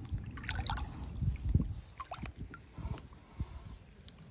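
Water splashing and trickling as a smallmouth bass, held by its lip, is dipped into the lake for release, with a few low thumps among the splashes.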